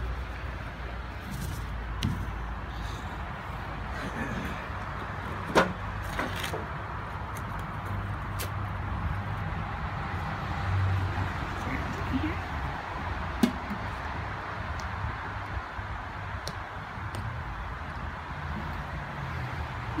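Steady outdoor background noise with a low rumble, broken by a few sharp clicks, the loudest about five and a half seconds in and again past thirteen seconds.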